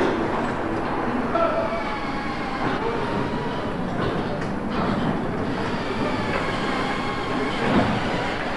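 Steady din of a car assembly line: running conveyor machinery with faint whining tones and a few short clanks, the loudest near the end.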